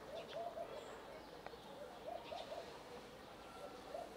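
Faint pigeon cooing: three short phrases of a few soft coos each, one at the start, one about two seconds in and one near the end.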